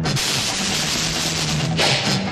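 Action film background music with drums. A loud crash begins just after the start and rings on for over a second, and another sharp hit comes near the end.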